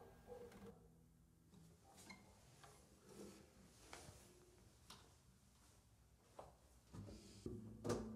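Near silence with faint handling noises: the last E major chord of an old Yamaha steel-string acoustic guitar dies away, then soft knocks and rustles as the guitar is picked up and moved. A louder knock comes near the end, with the strings faintly ringing after it.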